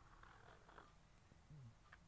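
Near silence: room tone, with a faint short low sound about a second and a half in.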